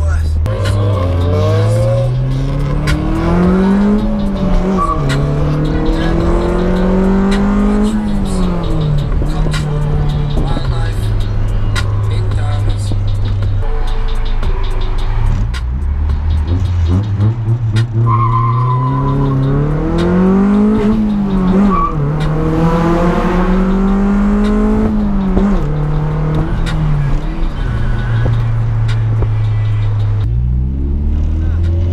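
Honda Civic hatchback's JDM B20B four-cylinder engine through its Vibrant exhaust, heard from inside the cabin and pulled hard twice through the gears. Each time the engine note climbs, drops at an upshift, climbs again and then settles back to a steady cruise.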